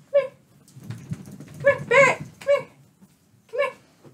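A dog giving about five short, high whines or yips, with a low rustle under the middle ones.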